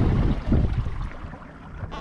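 Water washing along a moving kayak's hull, with wind buffeting the microphone, dying away over the second half as the boat slows.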